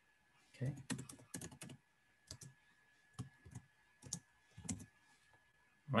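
Typing on a computer keyboard: a quick run of keystrokes in the first couple of seconds, then single keystrokes about half a second to a second apart.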